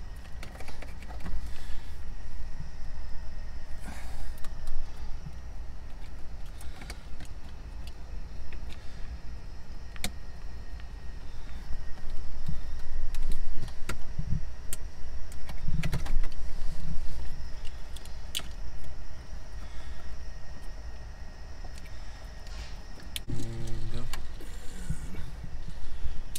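Plastic wiring connectors and a gauge cluster being handled and clipped into a truck dashboard: scattered sharp clicks and rattles, busiest a little past the middle, over a steady low rumble.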